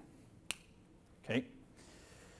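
A single sharp click about half a second in, then a short spoken "okay".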